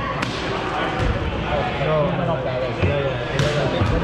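Indistinct chatter of players in a large gym hall, with about four sharp knocks of dodgeballs bouncing on the hardwood floor, two of them close together near the end.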